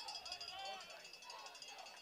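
Faint, distant voices with a trace of something musical, low under the broadcast's field sound.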